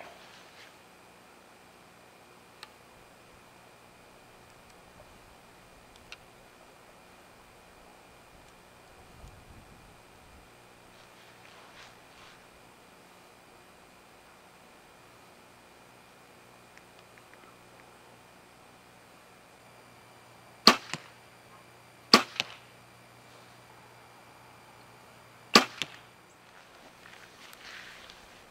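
Bowtech compound bow being shot: after a long quiet stretch while the bow is held at draw, three sharp loud snaps of the string's release come in the last third, each followed closely by a smaller knock of the arrow striking the target.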